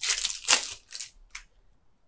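Shiny foil booster-pack wrapper crinkling and crackling as it is torn open, a few sharp crackles with the loudest about half a second in, dying away by about a second and a half.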